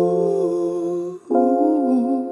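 Wordless male singing over sustained chords from a Casio Privia PX-S1100 digital piano, in two held phrases with a short break just past a second in.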